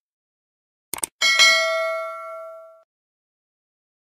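Subscribe-button sound effect: a quick double click about a second in, then a notification bell ding that rings out and fades over about a second and a half.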